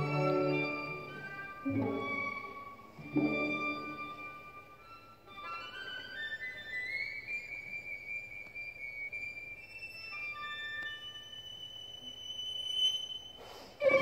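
Violin with a string orchestra in classical music: three accented full-ensemble chords, then a quiet, high, held violin line with slow upward slides, before the full orchestra comes back in loudly at the very end.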